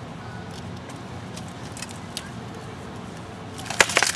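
Two sharp blows of sparring weapons striking as the armoured fighters close, near the end, over a steady low background rumble.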